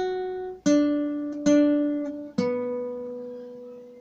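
Classical guitar played one note at a time: an F♯ rings from the start, then a D is plucked twice and a lower B is plucked and left ringing, fading away. These are the string-and-fret notes 12, 23, 23, 34 of a D major hymn melody.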